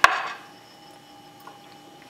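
A single sharp click right at the start with a brief rustle after it, then quiet room tone with a faint steady hum.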